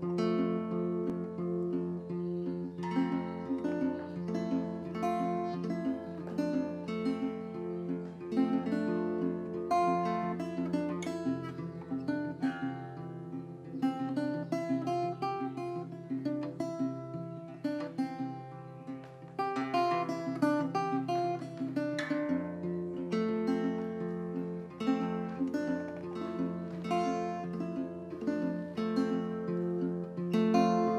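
Solo acoustic guitar, capoed, playing a steady flow of picked, ringing notes over low bass notes that change a couple of times; an instrumental intro with no voice.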